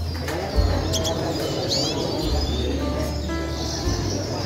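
Small caged finches, red siskins among them, chirping: a few short high calls that sweep up and down in pitch, over a steady low rumble.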